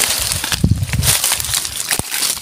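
Dry leaves and twigs crunching and crackling underfoot on bare ground, with a few low thumps about half a second to a second in.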